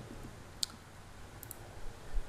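Computer mouse clicking: a single sharp click, then a quick pair of clicks just under a second later, over faint room hiss.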